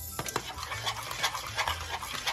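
Thick banana-and-oat porridge being stirred briskly in a stainless steel pot, the utensil making quick, irregular scraping strokes through the mixture. The constant stirring keeps the porridge from clumping.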